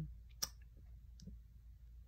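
A single sharp click about half a second in, then a much fainter click, over quiet room tone with a low hum.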